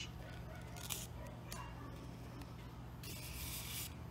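Needle and sewing thread being pulled through grosgrain ribbon after a running stitch: faint handling rustle, then a soft rasping hiss lasting about a second near the end as the thread is drawn through.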